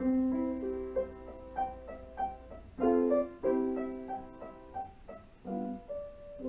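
Solo piano music: a gentle melody of single notes over held chords, with fuller chords struck at the start, about three seconds in and near the end.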